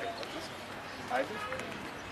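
Faint voices of people talking in the background over low ambient noise, a little louder about a second in.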